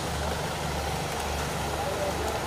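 A vehicle engine idling: a steady low rumble, with faint voices underneath.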